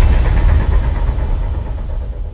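Deep rumbling tail of a cinematic boom sound effect, mostly low bass, slowly dying away.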